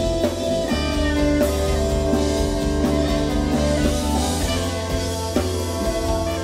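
Live jazz band playing, with electric guitar and drum kit.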